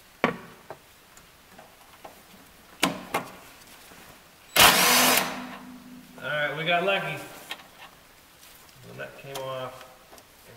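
Sharp metal clicks of a socket on a long extension being worked on a rusted shock absorber top nut, with one loud grinding burst about halfway through, the loudest sound. A man's voice follows, without clear words.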